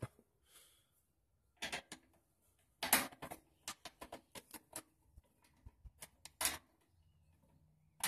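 Scattered light clicks and taps of a handle and screw being fitted and lined up against the steel firebox of a Char-Broil portable gas grill, in small clusters with short gaps between.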